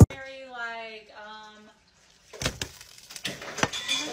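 A cooking pot and spilling cooked rice knocking and clattering on a glass-top stove, a run of sharp knocks starting a little past halfway, after a brief voice at the start.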